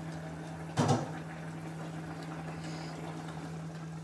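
A pot of cauliflower and potato curry simmering on an electric stove under a steady low hum, with one short clatter about a second in.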